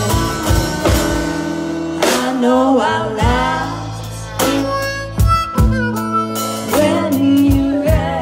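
Live blues-soul band playing: drums, upright bass and guitar under a harmonica line with sliding, bent notes, and some singing.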